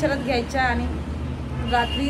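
A woman talking in Marathi, with a short pause in the middle. A steady low hum runs underneath.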